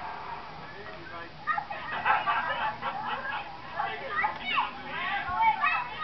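High-pitched children's voices chattering and calling out, livelier from about a second and a half in.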